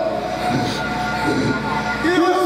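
A steady held chord of background music, with a voice faintly under it.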